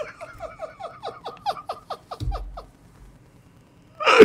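A man laughing hard in high-pitched, squeaky yelps, each falling in pitch, about four a second, fading out after about two and a half seconds. A soft low thump comes a little after two seconds.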